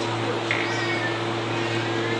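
Steady electrical hum from a public-address system, with a faint, brief high-pitched sound about half a second in.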